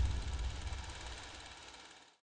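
Tail of a logo sting sound effect: a deep, low rumble dying away steadily and fading out at the end.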